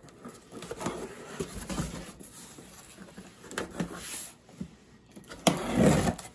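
A knife slitting packing tape on a cardboard box, with the box being handled: scattered scrapes, rustles and light knocks, and a louder rustle of cardboard near the end.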